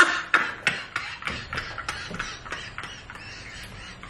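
A man laughing hard in breathy, wheezing bursts, about three a second, that trail off and grow quieter toward the end.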